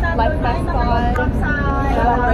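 A woman talking close to the microphone over a steady low rumble.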